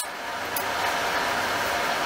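A steady rushing hiss, like a fan running, with a faint click about half a second in.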